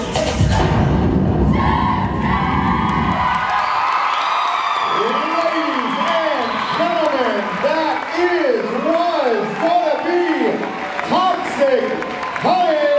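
Loud pop dance music with a heavy beat that stops about three and a half seconds in, followed by audience cheering, through which a pitched sound swoops up and down over and over, about once every two-thirds of a second.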